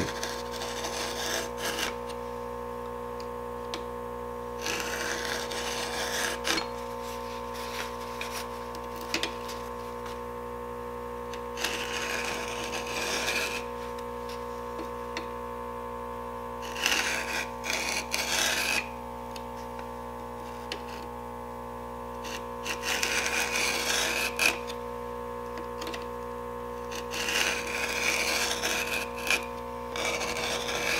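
Stihl 2-in-1 Easy File rasping across chainsaw chain cutters, filing each tooth and its depth gauge together. The strokes come in six short runs, each about two seconds long, with pauses of a few seconds between them as the file moves to the next tooth.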